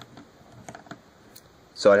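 Faint, scattered light clicks and taps of a plastic S.H. MonsterArts King Kong action figure being handled and moved in the hands, then a man's voice starts near the end.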